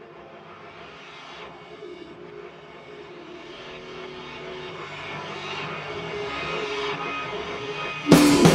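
Music: a slow crescendo of sustained droning tones over a noisy haze, growing steadily louder, from a guitar-bass-drums experimental rock band.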